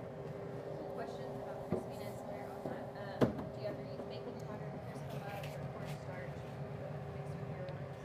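Two short wooden knocks, about two and three seconds in, as a large wooden cutting board is lifted and set down. A steady low hum runs underneath.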